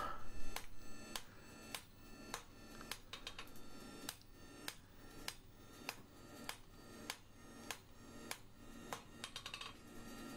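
A hand hammer striking a hot bar of breaker-point steel on an anvil, drawing it down, in a steady rhythm of a little under two blows a second, with a faint ring after each blow.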